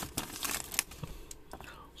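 Foil wrapper of a Donruss Optic baseball card pack crinkling as it is handled and torn open by hand: a few short crackles in the first second, then fainter.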